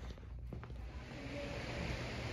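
Low steady rumble of background noise with a single click about half a second in. From about a second in it gives way to a steady, slightly louder hiss of open-air ambience.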